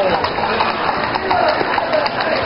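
Horses' hooves clopping on the street in a loose, uneven rhythm, under the steady chatter of a crowd of onlookers.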